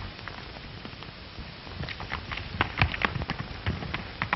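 Steady hiss with irregular crackling clicks and pops, growing denser and louder in the second half.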